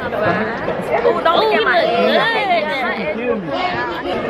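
Speech only: several voices talking over one another in close, overlapping chatter.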